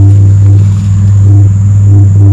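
A steady, very loud low hum with a few overtones, like a motor running.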